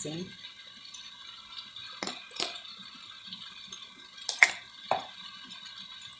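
Four light clicks and knocks of kitchen utensils and containers while a frying pan of potatoes is salted: two about two seconds in, half a second apart, then two more around four and a half to five seconds, the first of these the loudest. A faint steady hum runs underneath.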